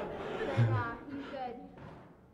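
Faint speech from a voice away from the microphone, a child answering a question.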